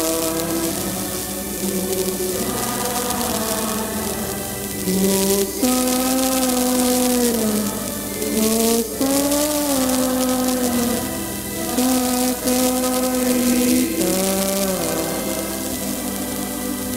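A church choir singing a slow hymn in long held notes, moving from note to note in short phrases with brief breaks between them.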